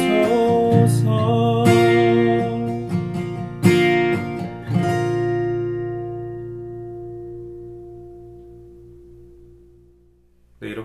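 Capoed Bedell acoustic guitar playing the last bars of a song: a few strokes in the first five seconds, then the final G chord left ringing and fading away slowly.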